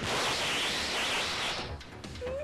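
A loud burst of hiss-like static that starts abruptly and fades out after about a second and a half. It is typical of the blank stretch of a videotape between two recorded segments.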